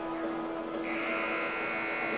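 Gym scoreboard horn buzzing, starting about a second in and held steady, over a faint sustained low tone.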